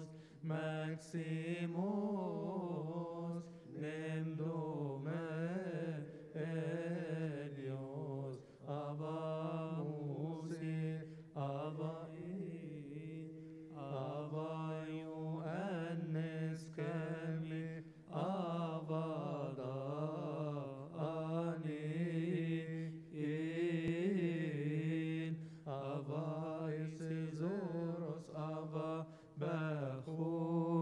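A man chanting a Coptic liturgical hymn, drawing out long vowels in wavering, ornamented melodic lines with short pauses for breath.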